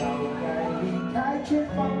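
Drum kit played along to a pop song backing track with singing and guitar, with drum and cymbal strikes over the music and a loud hit about one and a half seconds in. A sung line begins near the end.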